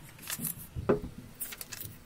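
Paper pages of a paperback book being turned by hand: several quick page swishes, with a louder flap about a second in.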